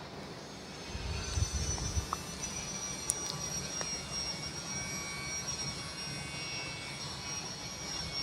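Aluminium profile roll-bending machine running while a window section is rolled into an S-shaped arch: a steady low hum with a thin high whine over it and a few faint clicks.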